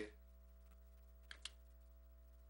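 Near silence: room tone with a steady electrical hum, broken by two faint clicks close together about a second and a quarter in.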